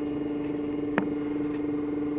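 A steady mechanical hum, with a single sharp click about a second in, like a wooden pen blank knocking against the others as it is handled.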